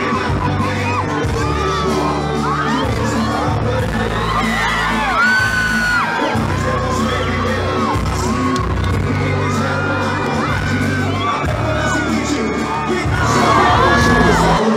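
Loud live band music through a concert PA, with a heavy bass line and a male lead singer, while the crowd close by sings, shouts and whoops along. It gets louder near the end.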